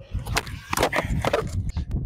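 Skateboard wheels rolling on concrete, then the tail popping for a 360 scoop and the board knocking back down onto the concrete in several sharp clacks.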